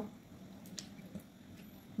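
A few faint, soft crackles as powdered coconut milk is shaken out of a paper sachet into a wok of hot broth.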